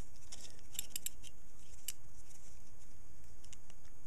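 Faint metallic clicks and scrapes of a screwdriver turning a small screw that fixes a brass arm to a switch, with a cluster of ticks about a second in and another click near two seconds.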